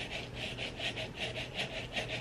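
Fingernails being filed with a nail file, in quick, even back-and-forth strokes, about five a second.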